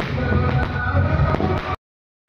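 Firecrackers going off with sharp cracks over loud music; the sound cuts off abruptly near the end.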